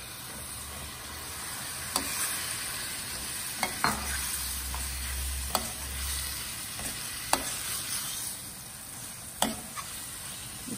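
Raw prawns sizzling in hot oil in a stainless steel frying pan as they are stirred through a masala with a metal spoon. The sizzling grows louder over the first few seconds, and the spoon clinks sharply against the pan about six times.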